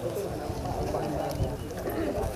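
Indistinct chatter of several people talking at once, with no clear words.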